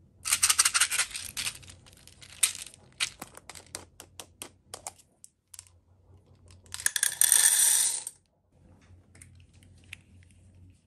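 Small beads clattering in a glass jar and a metal muffin tin: a dense rattle in the first second or so, then a run of separate clicks, then a second dense rattle of about a second as the beads are poured from the jar into the tin.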